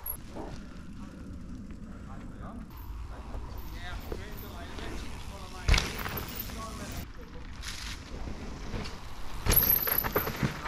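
A mountain bike riding past on a dirt woodland trail, with a sharp thump about halfway through as it goes by, and faint distant voices.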